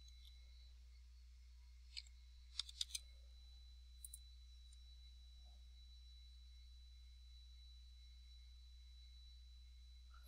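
Near silence broken by a few faint computer keyboard and mouse clicks: one about two seconds in, a quick run of three around three seconds, and two more around four seconds.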